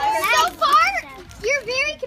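A group of children's high-pitched voices calling out in three loud bursts, with no clear words.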